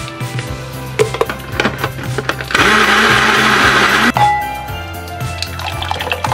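Electric blender running for about a second and a half in the middle, puréeing carrot soup, over background music.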